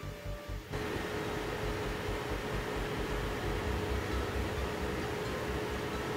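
Background music for under a second, cutting off abruptly. Then a steady whir and hiss of electronics cooling fans runs on, with a steady hum at one pitch.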